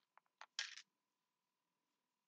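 A few light clicks and one short plastic crinkle about half a second in, as a mini cupcake is lifted out of a clear plastic clamshell container; then near silence.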